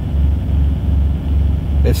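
Semi-truck's diesel engine idling, a steady low rumble heard from inside the cab.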